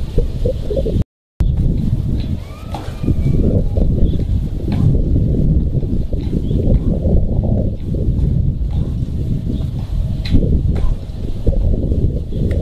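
Steady low wind rumble on the microphone, broken by a brief dropout about a second in, with a few faint bird chirps and a couple of sharp knocks.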